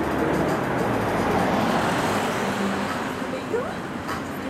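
A road vehicle passing by: its noise swells to a peak in the middle and fades away toward the end.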